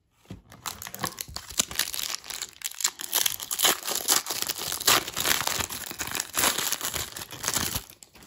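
Foil baseball-card pack wrapper being torn open and crinkled by hand: a dense, continuous run of crackling rustles that stops just before the end.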